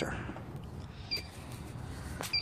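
Quiet background noise, low and steady, with a faint click about a second in, likely from the phone being handled as it is turned around.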